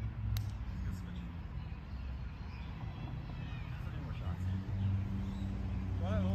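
A volleyball struck once with a sharp slap about a third of a second in, over a steady low hum that grows a little stronger near the end.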